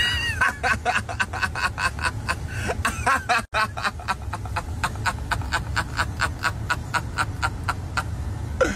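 High-pitched, rapid, breathless laughter, a quick run of short pulses that goes on without a break, opening with a brief squeal. A steady low rumble from the car idling lies under it.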